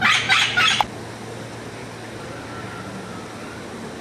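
A green parrot giving a quick run of harsh squawks in the first second, then only steady low background noise.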